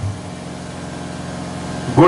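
A steady low machine hum, even and unbroken, with a low engine-like drone.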